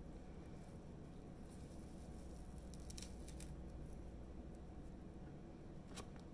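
Quiet room tone with a low hum and a few faint, light rustles and clicks of dried flower petals being handled and dropped into a glass jar on a scale.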